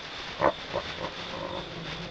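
Three short guttural creature grunts, the first the loudest, over a steady hiss.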